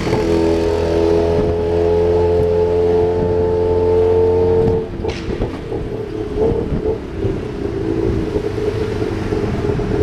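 Tuk-tuk engine running at steady revs with road rumble. Its even note cuts off sharply about halfway through, leaving a rougher rumble of engine and traffic.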